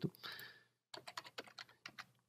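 Faint computer keyboard keystrokes, a quick run of about ten clicks in the second half, as code is copied and pasted with keyboard shortcuts.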